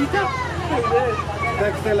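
Several people talking at once over the steady low hum of a moving tourist train's engine.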